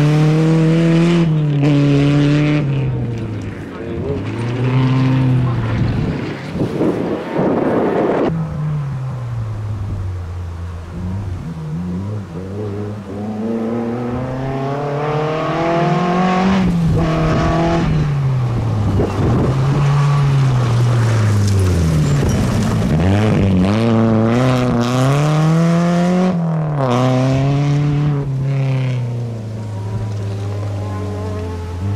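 Peugeot 206 RC rally car's four-cylinder engine revving hard on a gravel stage, its pitch climbing and dropping sharply again and again through gear changes and lifts as the car passes, over several edited passes.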